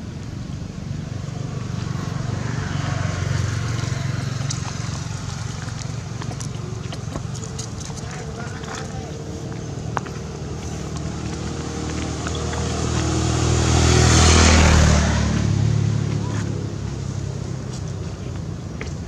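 Motor vehicle engine running in the background as a steady low rumble, with one vehicle passing that grows loud about three-quarters of the way through and then fades.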